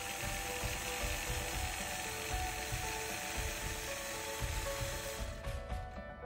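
Longarm quilting machine stitching, a fast steady mechanical clatter of the needle running, which stops about five seconds in.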